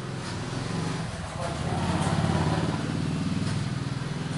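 A road vehicle's engine running, a low steady hum that grows louder about one and a half seconds in and then eases slightly: passing street traffic.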